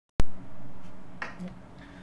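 A single sharp click just after the start as the webcam recording begins, then quiet room tone.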